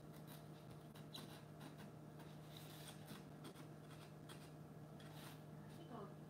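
Faint, irregular short scratching strokes of a hand tool drawn along corrugated cardboard while tracing or cutting around a puzzle-piece shape, over a steady low hum.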